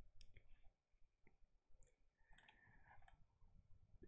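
Near silence, with a few faint, irregularly spaced clicks from someone working a computer.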